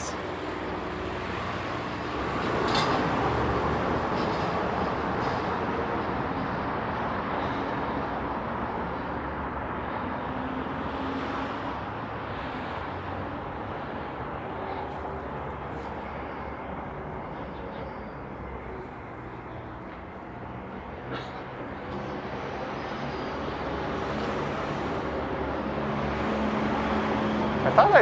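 Road traffic on a city avenue: a steady rush of passing vehicles that swells about three seconds in, fades slowly, and builds again near the end.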